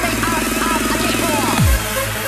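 Electronic dance music from a DJ mix: a fast, pulsing buzzy synth under a wiggling higher melody, ending about one and a half seconds in with a steep downward pitch sweep into deep bass.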